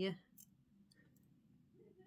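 A few faint, light clicks of costume jewellery being handled, small metal and rhinestone pieces tapping together, in a quiet room.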